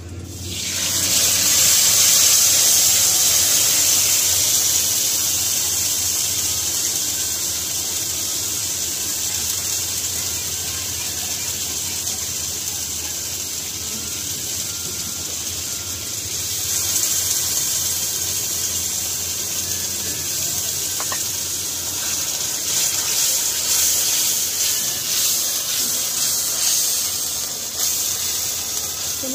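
Ground masala frying in hot oil in a kadhai: a loud, steady sizzle that bursts up just after the spices go into the oil, eases a little, then swells again about halfway through and toward the end.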